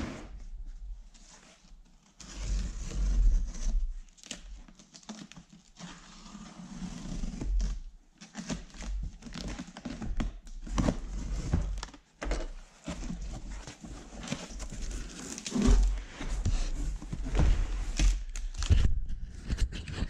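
Cardboard shipping box being opened and handled: irregular thumps, scrapes and knocks, with rustling of crumpled paper packing.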